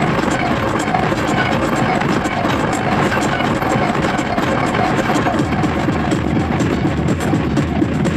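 Industrial hardcore electronic music: a dense, noisy, droning texture with a rapid pulse, steady and loud throughout.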